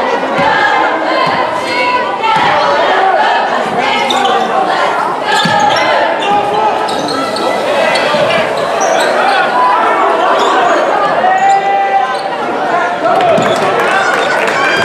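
Basketball being dribbled on a hardwood gym floor, the bounces echoing around a large gym, with voices from players and spectators throughout.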